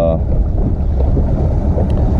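Boat's outboard motor running at idle, pushing the boat slowly at about 4 mph, with wind rumbling on the microphone as a steady low noise.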